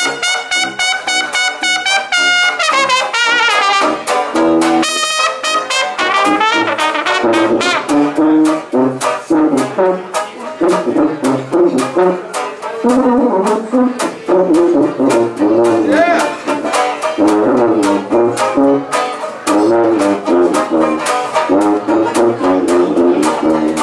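Traditional jazz band of trumpet, soprano sax, trombone, tuba, banjo and washboard playing an up-tempo number. The trumpet holds a long high note over the ensemble for the first few seconds, then the trombone plays a solo over the tuba, banjo and washboard rhythm.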